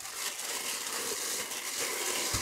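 Clear plastic bag crinkling as it is handled, a continuous crackly rustle.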